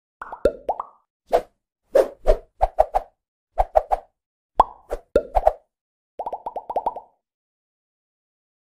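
Cartoon-style pop sound effects accompanying a motion-graphics intro: short pops in irregular clusters, some dropping quickly in pitch, ending with a rapid run of about eight pops near the end.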